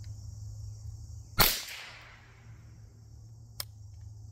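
A single shot from a Rossi RS22 semi-automatic .22 LR rifle firing CCI Blazer 38-grain round-nose ammunition, about a second and a half in, with a short echo trailing off. A faint click follows near the end.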